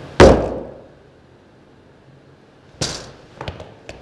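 A costumed mascot's gloved hands slamming down on a wooden conference table: one hard slam just after the start that rings out for about half a second, then a lighter thump and a couple of soft knocks near the end.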